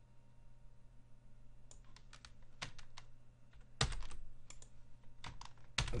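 Typing on a computer keyboard: after a quiet start, scattered keystrokes begin a couple of seconds in, with the loudest strokes near the middle and at the end. A faint steady low hum runs underneath.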